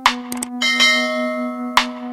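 A bell chime sound effect rings out about half a second in, just after a quick double click, and fades away over electronic background music with a steady beat.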